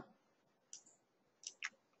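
Near silence broken by three short, faint clicks, the last two close together.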